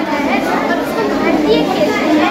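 Many children's voices chattering at once, a steady babble echoing in a large hall.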